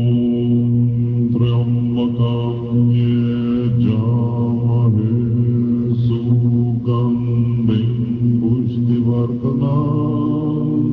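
A group of low voices chanting Tibetan Buddhist prayers in a steady, droning monotone, recorded on a hand-held battery tape recorder.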